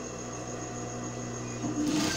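Industrial sewing machine running with a steady hum while stitching gathered tulle and satin ribbon; the hum changes a little before the end.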